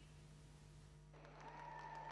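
Near silence: room tone with a low steady hum, then from about a second in a faint hiss of sports-hall ambience with a thin steady tone.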